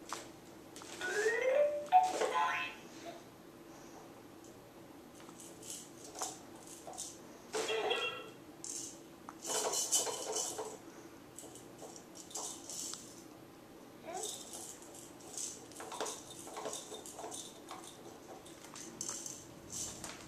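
Plastic clicking and rattling from the spinner on a Playskool ride-on toy's steering handle as a toddler turns it, in scattered bursts. Short rising squeals sound about a second in and again around eight seconds.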